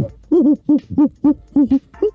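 A rapid, even run of short hooting sounds, about three a second, each one rising and falling in pitch.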